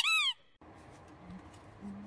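A cartoon-style editing sound effect: a quick run of squeaky, high chirps, each rising then falling in pitch, ending about a third of a second in. After it comes faint room tone.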